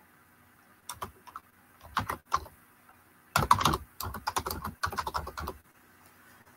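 Computer keyboard typing: a few scattered keystrokes about one and two seconds in, then a fast run of keystrokes for about two seconds from around the middle.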